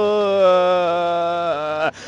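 Football commentator's long drawn-out goal cry, one sustained 'gooool' held on a single note that slides slowly down in pitch and breaks off near the end.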